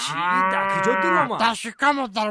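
A single long, drawn-out call with a rising start that holds and then falls away after about a second and a half.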